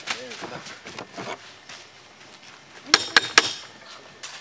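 Wrestling ring bell struck three times in quick succession about three seconds in, with a bright metallic ring: the bell signalling the start of the match.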